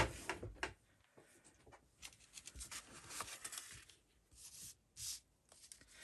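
Faint rustling and light taps of small cardstock pieces being handled, in scattered short bursts.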